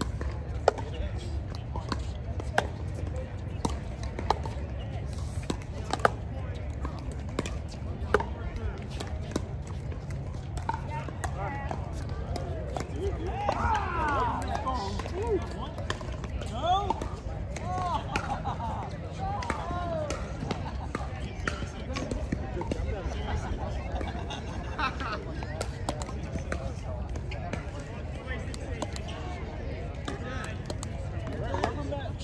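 Pickleball paddles hitting a plastic ball in a rally: sharp pops about every two seconds over the first eight seconds. Players' voices follow near the middle, over a steady low rumble.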